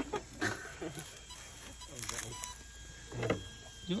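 Faint, thin, steady high whine from an RC crawler truck's electric motor and speed controller, with a short electronic beep about two and a half seconds in.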